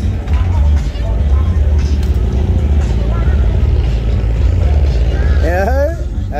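Slow-cruising cars passing close by, a strong low rumble with uneven pulsing bass from engines and car stereos, and a voice near the end.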